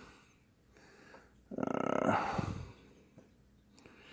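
A short, rough growling vocal sound, a little over a second long, starting about one and a half seconds in.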